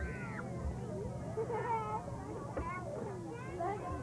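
Several children's high voices chattering and calling over one another, with a high rising-and-falling squeal right at the start. A steady low hum runs underneath.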